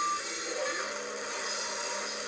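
A band's recorded song playing through a laptop's small speakers: a dense, steady wash of sound with no clear beat.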